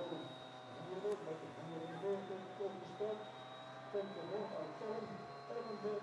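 Faint, indistinct speech in the background over a steady electrical hum, with a thin high tone running throughout.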